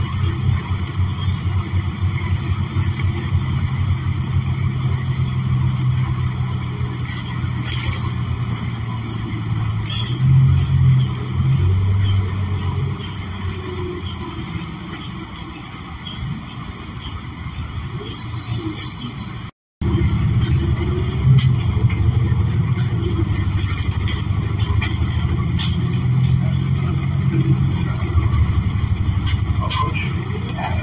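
Inside a New Flyer XN40 natural-gas bus under way: the Cummins Westport L9N engine running with road and body noise, a steady low rumble that swells a little about ten seconds in. The sound drops out for a split second about two-thirds of the way through.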